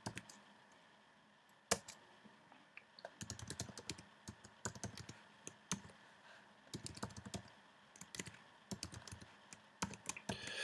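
Faint typing on a computer keyboard: a single keystroke near the start and another just under two seconds in, then runs of quick keystrokes from about three seconds in.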